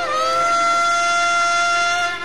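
Alto saxophone in Carnatic style holding one long steady note, reached by a short upward slide at the start.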